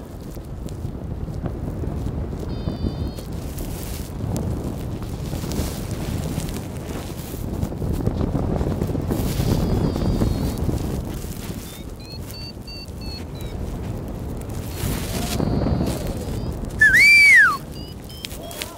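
Wind buffeting the microphone with a rough low rumble, and faint short high chirps now and then. Near the end a loud whistle rises and falls, about a second long.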